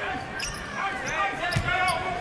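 Game sound on a basketball court: a basketball bouncing on the hardwood floor, with players' sneakers squeaking as they move.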